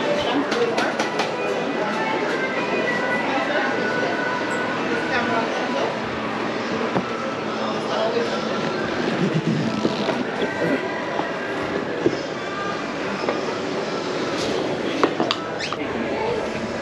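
Mountain coaster carts and track running in the loading station: a steady mechanical rattle and rumble with scattered squeaks and a few sharp clicks, voices underneath.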